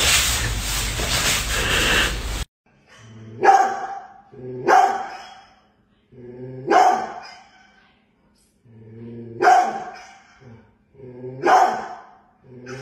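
A short stretch of noisy rustling, then a large dog barking: five single, deep barks spaced a second or two apart.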